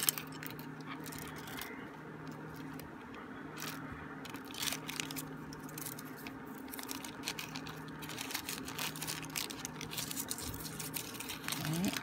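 Small clear plastic bead bags and a plastic box handled by hand: light rustling, crinkling and scattered small clicks. A steady low hum runs underneath.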